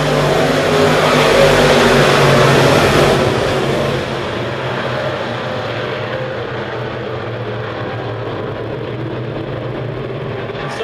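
A pack of dirt-track sport modified race cars running V8 engines at racing speed. It is loudest for the first few seconds as cars pass close by, then settles into a steady drone of engines working around the track.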